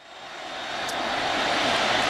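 The noise of a large stadium football crowd: a steady roar that rises from faint to loud.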